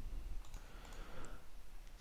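Quiet low hum with a few faint clicks, about half a second to a second and a quarter in.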